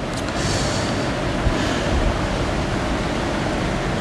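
Steady rushing noise with a low rumble underneath, level throughout with no distinct events.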